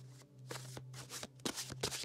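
A tarot deck being shuffled overhand by hand: a run of quick, soft card swishes and flicks that starts about half a second in and grows busier toward the end.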